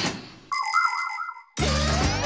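Cartoon transition sound effects: a fading whoosh, then a bright ding about half a second in that rings for about a second. A children's music jingle with rising glides starts near the end.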